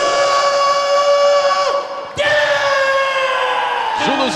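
A ring announcer's voice shouting two long, drawn-out calls, each held for nearly two seconds with a brief break between them, the second sagging slowly in pitch.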